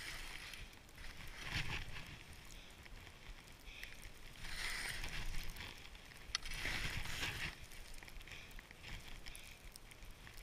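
Skis sliding and turning through deep snow, a hissing swoosh that swells three times, with steady wind rumble on the helmet-mounted microphone.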